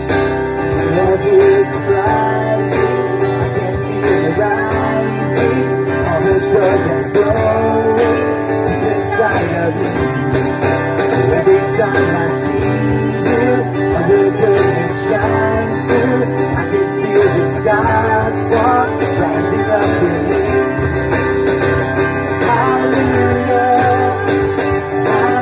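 Live worship song: acoustic guitar strumming under a man's and a woman's voices singing, with other band instruments.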